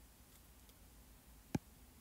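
A single sharp tap about one and a half seconds in, against quiet room tone: an Apple Pencil tapping the iPad's glass screen to open a menu.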